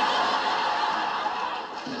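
Sitcom studio audience laughing: a steady wash of many people's laughter that eases off slightly near the end.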